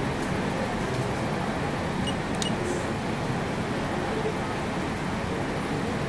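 Steady background hum and hiss of room noise, with a brief faint click about two and a half seconds in.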